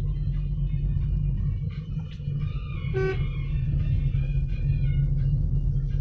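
Steady low road and engine rumble inside a moving car's cabin, with music playing over it. A short pitched tone sounds about halfway through.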